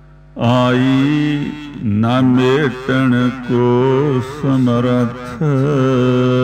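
A man's voice chanting a Gurbani hymn in a slow, melodic, sustained style, over a steady held drone. The voice comes in about half a second in, with short breaths between phrases.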